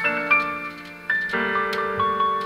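Piano accompaniment playing an introduction: a chord struck at the start and another about a second and a half in, each ringing out and fading, with a few light clicks between them. The trumpet has not come in yet.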